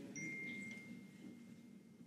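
A faint single high ringing tone, chime-like, that sounds just after the voice stops and fades away over about a second and a half.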